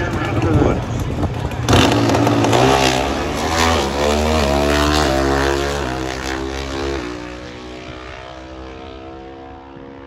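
Drag-racing motorcycle launching hard off the start line a little under two seconds in, its engine pitch climbing and dropping back with each quick gear change, then fading as the bike runs away down the strip.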